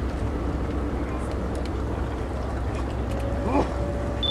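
Steady low outdoor rumble with faint voices in the background. A short wavering call rises and falls about three and a half seconds in.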